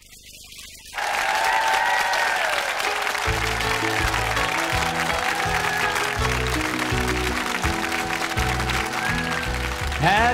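Studio audience applause, with a country band striking up a song's instrumental intro about a second in: a lead melody with sliding notes, joined by bass and drums with a steady beat about three seconds in.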